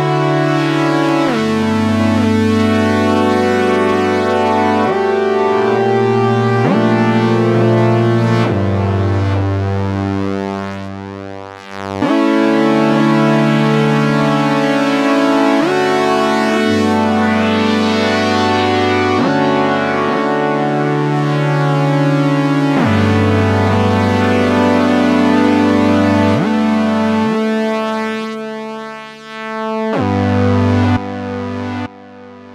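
GForce OB-E software synthesizer, an emulation of the Oberheim 8-Voice, playing a sustained polyphonic chord progression through its stereo delay. The chords change every couple of seconds, each sliding into the next with a short portamento glide. The sound dips briefly twice, about halfway through and near the end.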